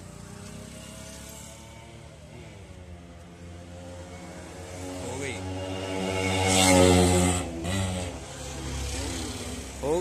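Hyundai Venue engine starting on the push button and revving up, loudest about seven seconds in, then settling to a steady idle. It is the first successful start after the battery was disconnected and reconnected to clear a no-start fault.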